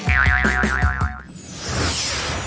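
A cartoon 'boing' sound effect, a wobbling up-and-down tone, over background music with a beat. About a second in it gives way to a sweeping transition sound.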